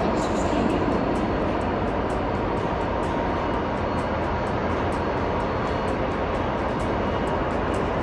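Steady station ambience under the train shed: an even rumble and hiss with a faint steady hum, holding the same level throughout.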